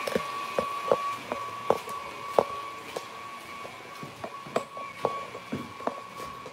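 Footsteps and handling knocks from a handheld camera carried away from a running stand mixer, whose steady whine fades as the camera moves off.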